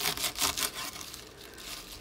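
Crisp, freshly cut curly kale leaves rustling and crunching as they are handled on a plastic cutting board. There is a quick run of short crunches in the first part, then fainter rustling.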